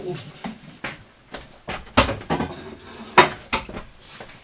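Dishes and cutlery being handled on a kitchen counter: a series of clinks and knocks, the loudest about two seconds in and again just after three seconds.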